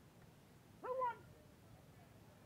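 A single short, high-pitched vocal call about a second in, rising quickly and then falling in pitch, over faint outdoor background.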